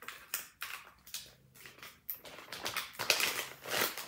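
Clear plastic poly bags crinkling and rustling as packaged wax melts are handled, in irregular bursts that grow loudest near the end.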